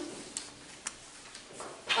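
A few small, sharp clicks about half a second apart, from handling at a meeting table, over quiet room tone. A voice starts speaking just before the end.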